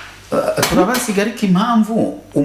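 A voice chanting a short repeated phrase in drawn-out, wavering notes, with sharp clinks, one about two thirds of a second in.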